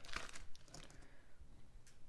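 Faint crinkling of a food wrapper being handled, with a couple of light clicks.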